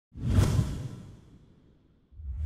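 A whoosh sound effect from a broadcast logo intro, with a deep low end. It swells quickly and fades away over about a second.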